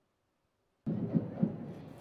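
Dead silence for almost a second, then outdoor street ambience at a parade cuts in abruptly: a steady noisy haze with a few low thumps.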